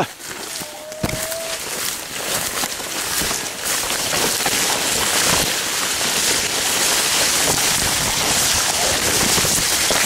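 Dense, continuous crackling rustle of tall energy sorghum stalks and leaves brushing and snapping against a moving camera and body as someone pushes through the crop.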